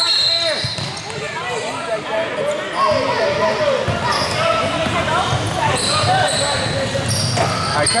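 Basketball bouncing on a hardwood gym floor, with brief high squeaks near the start and again near the end, under a continuous hubbub of voices from players and spectators echoing in the hall.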